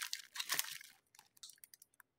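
Crinkling of plastic sweet wrapping: a small pink Ritter Sport chocolate in its wrapper and a clear cellophane bag handled in the fingers. Sharp crackles at first, thinning to a few faint ticks and dying away before the end.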